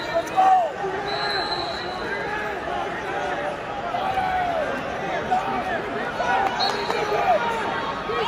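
Arena crowd of many voices shouting and calling over one another, with a faint steady high tone coming in twice.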